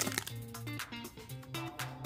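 Soft background music of plucked guitar-like notes, with a faint crinkle of a foil trading-card pack wrapper being handled.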